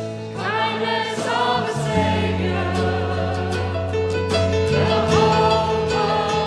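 Live church worship band playing a song, with group singing over keyboard, electric guitar and bass; the bass notes change about two and five seconds in.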